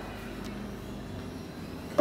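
Steady low background rumble with a faint hum and no distinct events.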